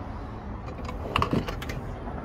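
A handful of light clicks and rattles about a second in, from a hand handling the loose battery cables and plastic pull-out tray in a travel trailer's empty battery compartment.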